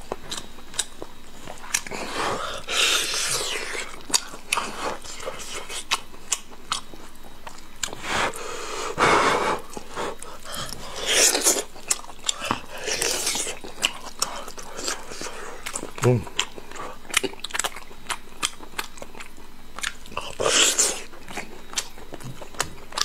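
Close-miked chewing of soft braised meat on the bone: wet mouth clicks and lip smacks throughout, broken by several louder, breathy sucking sounds, and a short hummed "mm" about two-thirds of the way through.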